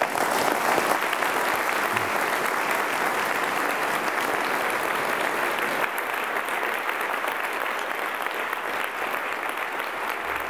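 Large audience applauding, the clapping breaking out all at once and holding steady, easing slightly toward the end.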